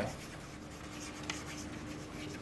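Chalk writing on a chalkboard: a run of short, light scratching strokes as a word is written, over a faint steady room hum.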